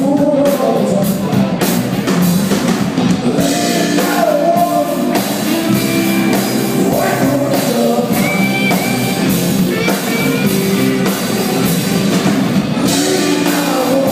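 A live blues-rock band playing a song, with drum kit, electric guitar and singing, recorded on a phone.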